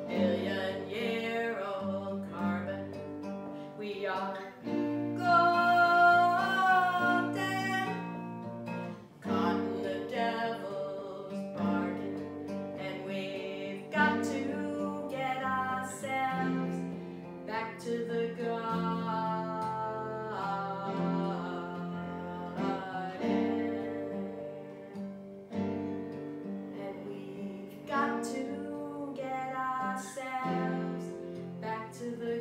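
Live acoustic guitar playing with a woman singing the melody over it, a song performed by a duo.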